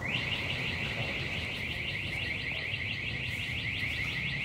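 An electronic alarm sounding a fast, steady warble of rising high-pitched chirps, several a second; it starts suddenly and keeps going.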